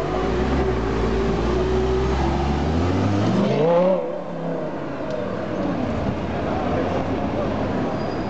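Lamborghini Gallardo LP570-4 Superleggera's 5.2-litre V10 running steadily at low revs, then revving up in a rising sweep about three seconds in as the car pulls away. The level drops sharply at about four seconds and the engine carries on more faintly as the car drives off.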